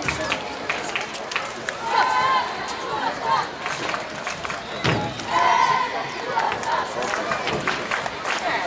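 Several children's voices shouting and chattering on an open football pitch, in loud bursts about two seconds in and again after five seconds, with scattered short sharp clicks in between.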